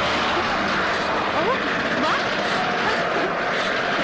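Loud, steady rushing noise with a few brief shouting voices over it.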